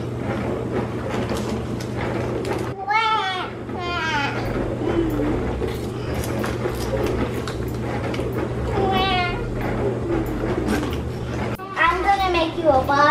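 A child's high-pitched, wavering squeals or whines, short calls about three and four seconds in and again near nine seconds, over a steady low background hum.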